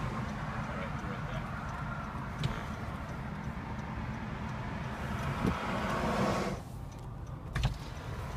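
Steady vehicle and road noise heard from inside a stopped car with its window open, cutting off sharply about six and a half seconds in. A low thump follows near the end.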